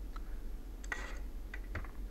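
Quiet room tone with a low steady hum and a few faint clicks, among them a computer mouse click.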